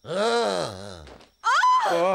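A man's startled wordless groan on waking, rising and falling in pitch for about a second, followed about a second and a half in by a second, higher-pitched voice crying out.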